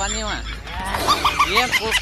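A man's voice making wavering, squawky, drawn-out sounds that slide up and down in pitch, going higher and shriller about a second in.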